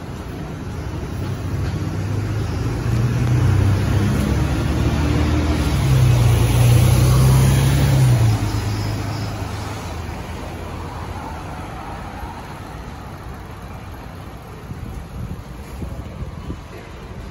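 Mercedes-Benz O530 Citaro diesel bus pulling away from the stop. Its engine note builds as it accelerates, steps up in pitch and is loudest six to eight seconds in, then fades as the bus drives off into light road traffic.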